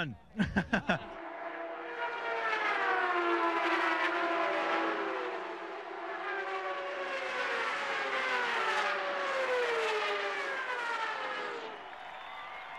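CART Champ Car turbocharged V8 engines at racing speed on an oval, their high-pitched notes falling in pitch again and again as cars pass. A short laugh comes just before them.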